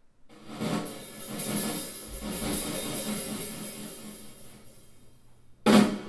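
Drum-led music played through ESB 2.165 II 16 cm midbass speakers, crossed over at 5 kHz to small wide-range drivers. Cymbals and hi-hat fade in, a low bass note comes in about two seconds in, and a loud drum hit lands near the end.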